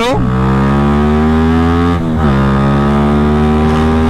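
Yamaha Y15ZR's single-cylinder engine accelerating on the road. Its pitch rises steadily, dips briefly at a gear change about two seconds in, then rises again.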